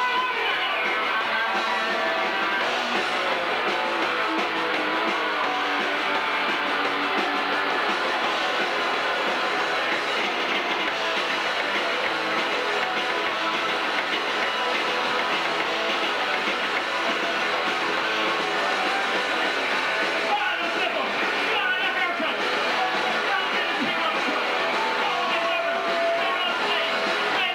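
Punk rock band playing live: loud electric guitars with bass and drums at a steady, unbroken level, with a brief change in the playing about twenty seconds in.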